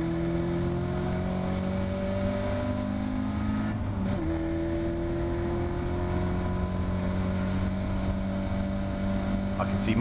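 A Caterham Seven race car's engine heard from its open cockpit, pulling hard under acceleration with its pitch rising steadily. A little under four seconds in there is one quick upshift, and then the pitch climbs slowly again as the car gains speed.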